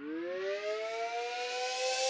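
Siren sample winding up at the start of a reggae track. Its pitch climbs quickly, then levels into a steady wail that grows louder.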